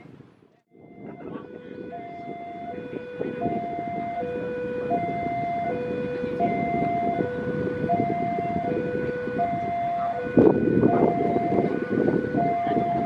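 Railway level-crossing warning alarm sounding a two-tone signal, a higher and a lower note alternating about every three-quarters of a second, over the growing noise of a train on the line. The train noise jumps louder about ten seconds in.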